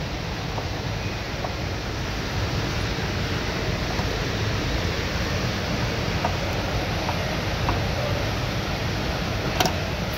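Steady rushing background noise, like a ventilation fan, with a few faint light clicks scattered through it.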